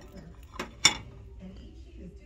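Ceramic plate clinking against the dishes around it as it is picked up: two sharp clinks about a quarter second apart, the second louder.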